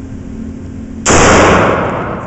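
A single shot from a Cobra CB38 big-bore .38 Special derringer about a second in: a sharp, very loud report followed by a long echoing decay off the concrete walls of an indoor range.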